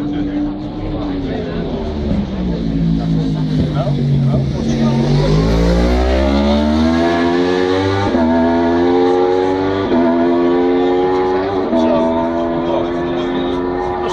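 Racing superbike engine slowing through the corner with its pitch falling, then accelerating hard away, the pitch climbing and dropping sharply at each upshift, three gear changes about two seconds apart.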